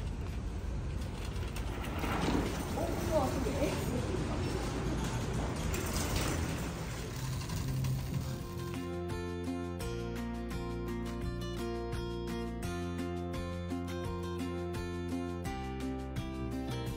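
Plastic shopping cart rattling on its wheels as it is pushed, with faint voices in the background. Background music takes over about halfway through.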